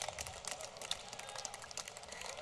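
Scattered, faint handclapping from a small crowd, irregular claps throughout, with faint distant voices.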